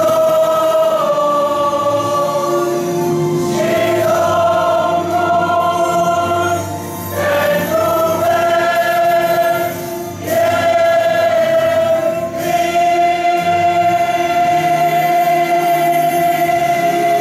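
Mixed church choir of men's and women's voices singing a hymn in long held chords, with the phrases breaking off briefly about every three seconds.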